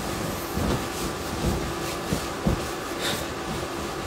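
Freshly dried clothes being handled and folded: soft fabric rustling and a few light knocks over steady room noise.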